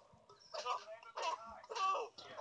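A cartoon man yelping in pain three times, about half a second apart, as he is spanked.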